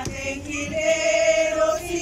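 A group of women singing a hymn together, holding long sustained notes.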